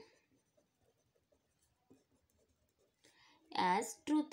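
Pen writing on paper: faint scratching strokes. A voice starts speaking near the end.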